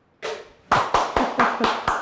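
A man laughing while clapping his hands in a quick, even run of about five claps a second, starting about two-thirds of a second in.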